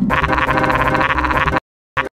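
Heavily glitched, digitally distorted audio: a loud, rapidly warbling, croak-like pitched sound. It cuts off suddenly about one and a half seconds in, and a short blip follows near the end.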